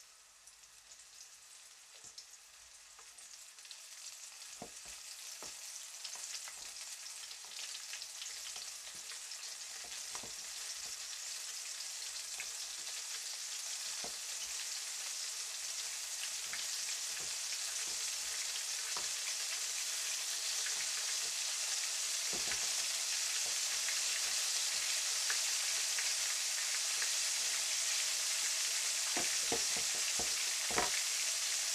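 Cooking oil in a wok sizzling, growing steadily louder as it heats up for deep-frying. A few light clicks of a fork against a glass mixing bowl are scattered through it.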